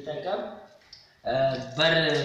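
A man speaking, with a short pause in the middle.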